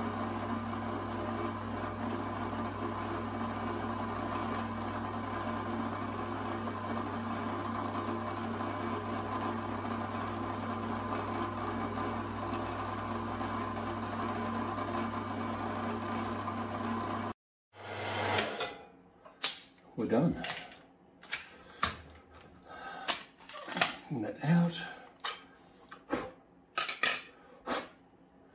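The spindle motor of a home-built CNC router running steadily with a low hum as the next hole is milled in an aluminium part. The hum stops abruptly about two-thirds of the way in, and is followed by scattered light clicks and knocks of metal parts being handled.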